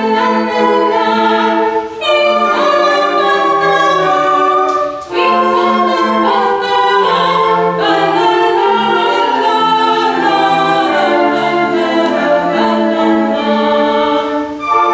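A female solo voice singing a classical-style song over a live ensemble that includes flutes, in sustained phrases with new phrases entering about two, five and eight seconds in.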